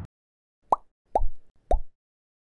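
Three cartoon-style pop sound effects about half a second apart, each a sharp click followed by a quick falling pitch.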